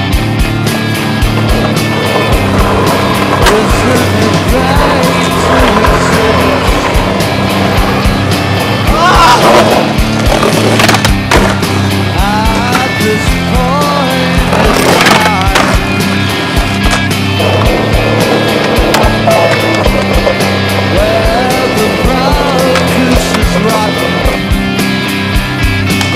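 Music with a steady beat, mixed with skateboard sounds: wheels rolling on pavement and a few sharp pops and landings of the board, with clear strokes about 9 to 11 seconds in and again about 15 seconds in.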